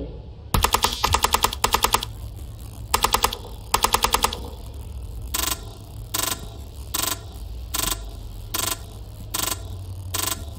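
Opening of a dubstep DJ set over a festival sound system: rapid machine-gun-fire sound-effect bursts, three rattles in the first four seconds over a steady low bass, then short even pulses about every 0.8 seconds.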